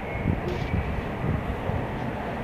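Steady low background rumble, with faint rustling and rubbing of plastic basket wire strands as hands pull and knot them.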